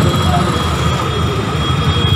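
Steady low rumble of road traffic, a vehicle going by, in a pause between spoken phrases.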